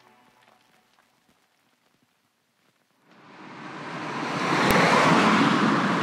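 Background music fading out, near silence for about two seconds, then a steady rushing noise that swells up over about two seconds, with one sharp click shortly before the end.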